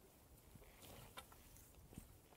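Near silence: faint outdoor air hiss with a few soft clicks around the middle.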